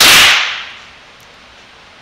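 A single 9mm pistol shot from a Glock 17, very loud and close, its echo in the concrete range lane dying away over about half a second.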